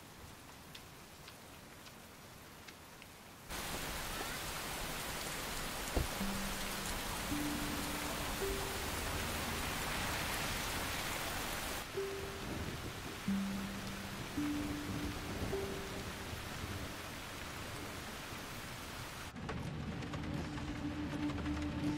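Steady rain that starts abruptly a few seconds in and eases a little about halfway, with one sharp crack soon after it starts. Slow, held low notes of a film score sound over the rain.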